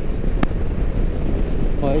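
Motorcycle riding at highway speed: a steady rumble of wind on the microphone, engine and tyres, with one sharp click about half a second in.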